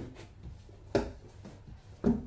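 Books being handled in a cardboard box: faint shuffling and rubbing, with one sharp knock about a second in.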